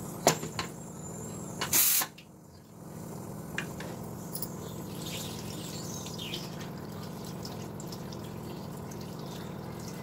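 Tap water running steadily over a hot pressure cooker's lid in a sink. It cools the cooker so its pressure drops and the lid can be opened quickly. A knock comes at the start and a short loud burst of noise about two seconds in, before the steady water settles in.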